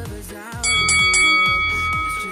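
Upbeat background music with a steady beat. About half a second in, a bell chime strikes three times in quick succession and rings on: the interval timer's signal that the break is over and the next work interval starts.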